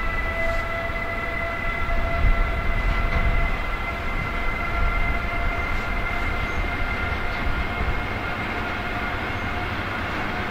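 Two Siemens ES64F4 electric locomotives hauling a container freight train past, with a steady whine of several held tones from their traction equipment over the low rumble of wheels on rail.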